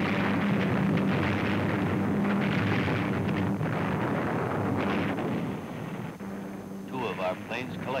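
Film-soundtrack anti-aircraft fire: a dense, continuous rumble of flak bursts with a couple of sharper blasts, over a steady low hum. The rumble fades about six seconds in, and a narrator's voice follows.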